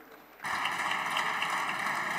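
Near silence, then about half a second in a steady hiss of chamber noise rises suddenly and holds.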